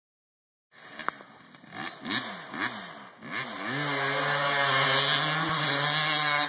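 Dirt bike engine revving up and down several times in quick blips, then holding a longer, louder pull with the pitch slowly rising as the bike accelerates.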